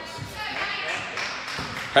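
Indistinct background hubbub in a gymnasium: faint distant voices and room noise, steady and quiet.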